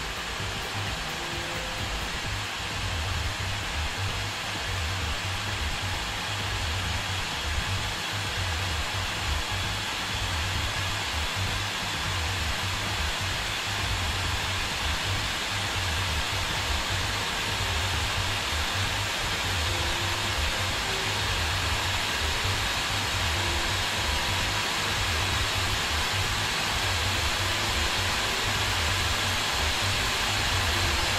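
Radeon HD 6990 graphics card's cooling fan running, a steady rushing noise that grows gradually louder as the fan speed is raised from about two-thirds to nearly full.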